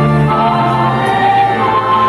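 A choir singing sacred music, with long, sustained notes.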